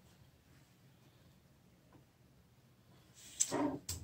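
Near silence for about three seconds; then, near the end, a brief rustle and a sharp click as a paper pattern is slid and settled on needlepoint canvas.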